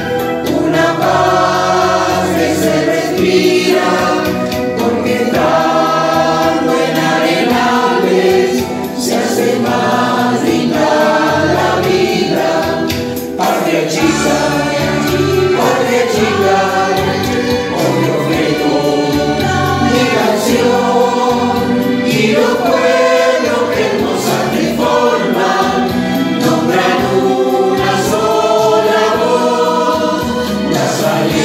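Choir singing a hymn, the voices holding and moving between notes the whole way through.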